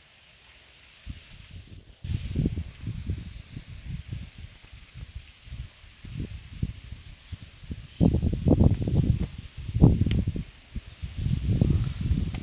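Wind buffeting the microphone in irregular low rumbling gusts, with a faint rustle and hiss over it. It starts about two seconds in and is heaviest in the last third.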